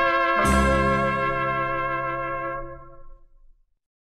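Closing chord of a 1960s German Schlager recording: the brass-led band holds a final chord, strikes it again with a low bass note about half a second in, then lets it ring and die away, gone by about three and a half seconds in.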